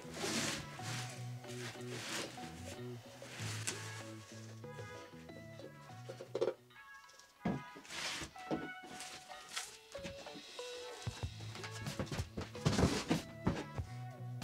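Background music with steady held notes, over scattered thunks and rustles of a cardboard sheet and a plastic container being handled as grated soap flakes are tipped and swept into the container.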